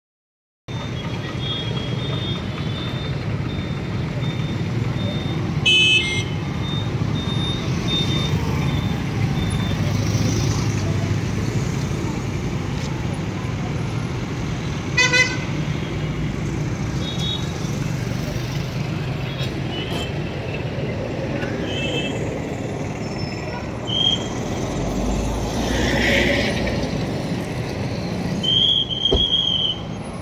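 Street traffic of motorbikes and cars: a steady rumble of passing engines, with short horn honks about six and fifteen seconds in and intermittent high-pitched beeping.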